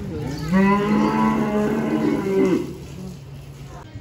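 A cow mooing: one long call of about two seconds, starting about half a second in.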